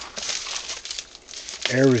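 Crinkly wrapping rustling and crumpling as hands pull open an egg-drop package. A man says one word near the end.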